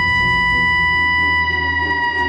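Suspense music from a cartoon soundtrack: one long, held high note that slowly sinks in pitch, over a low drone.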